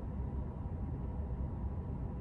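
Steady low hum in a parked car's cabin, with a faint hiss over it.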